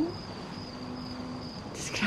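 A cricket trilling steadily in the background: a thin, high, unbroken tone. There is a short intake of breath near the end.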